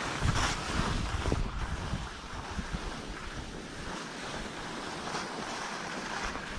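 Wind rumbling on a GoPro's microphone, mixed with the hiss and scrape of skis sliding over chopped-up snow. It is a little louder with a few scrapes in the first second, then steady.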